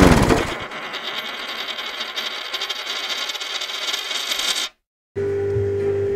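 A Levatron's small magnetic spinning top rattling fast as it spins and wobbles on its base, a fine metallic clatter that stops abruptly after about four seconds. After a short gap comes a steady low hum with a held mid-pitched tone.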